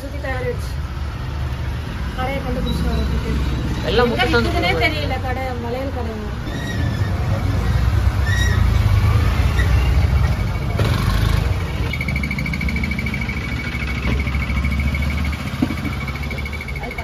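Indistinct voices over a steady low rumble. A pulsing high-pitched tone starts about twelve seconds in.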